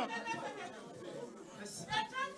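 Quiet chatter of several people talking at once in a hall, with a louder voice rising briefly near the end.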